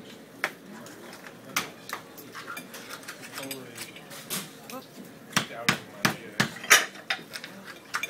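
Oyster shells and a shucking knife clicking and clacking as oysters are shucked and set down, sharp knocks that come quicker over the last few seconds.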